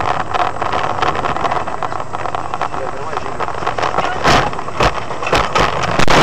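Car cabin noise of a car driving on a snowy road, heard from inside. In the second half come several sharp knocks.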